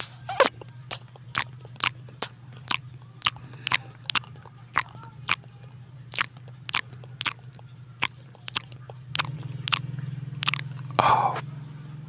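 Close-miked chewing of food, with a sharp wet click about twice a second in a steady rhythm. A brief, louder noisy sound comes near the end.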